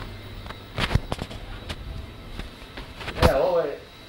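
Handling knocks and bumps as a hand-held camera is moved and set down, with a louder thump near the end followed by a moment of a man's voice.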